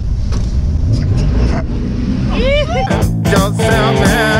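Vintage car's engine and road noise heard from inside the cabin as a steady low rumble, with a short rising-and-falling voice about two and a half seconds in. Rock music with a drum beat starts about three seconds in and carries on past the end.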